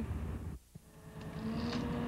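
Low engine rumble that cuts off suddenly about half a second in; after a brief quiet, a steady engine hum of heavy equipment at a wreckage site sets in.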